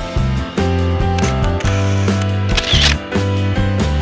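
Background music with a bass line and a steady beat, with two short hissing sound effects laid over it, about a second in and again near three seconds.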